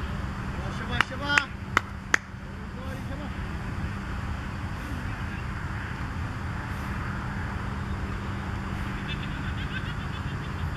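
Steady low hum with faint background voices. About a second in come three sharp clicks and one short pitched call, with a player's voice the likeliest source of the call.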